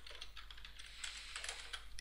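Typing on a computer keyboard: a quick run of faint key clicks as the coupon code SPECIAL is typed in.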